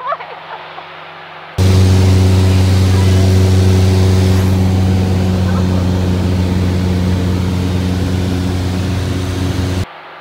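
Light aircraft's piston engine and propeller, a loud steady drone heard from inside the cabin without the headset intercom. It cuts in abruptly about one and a half seconds in and cuts off just before the end.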